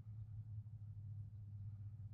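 Quiet room tone with a steady low hum; no distinct sound from the pot being rolled through the water.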